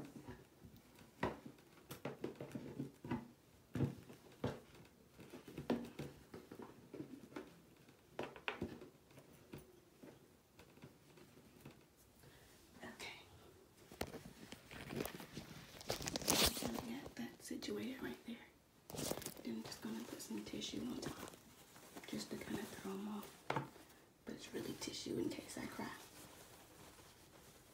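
Tissue paper crinkling and rustling as a gift box is packed, with a series of short knocks and taps from things being handled and set down. A faint, muffled voice comes and goes, mostly in the second half.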